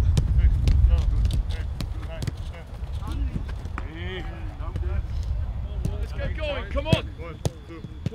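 Footballs being kicked and bouncing on a grass pitch: a scattered string of sharp thuds, the sharpest near the end, with heavy wind rumble on the microphone in the first couple of seconds and distant shouts from players.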